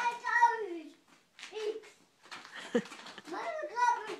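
A small child's voice making short, high-pitched wordless sounds: one longer call falling in pitch in the first second, then several brief ones, with more calls near the end.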